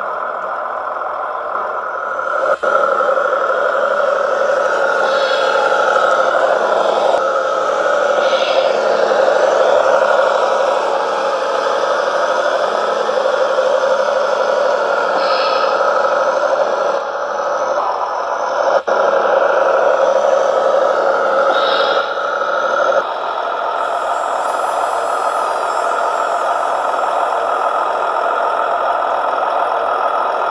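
Radio-controlled Fendt model tractors running, a steady engine-like drone from their small motors and drive, with abrupt jumps in sound a few times where shots are cut together.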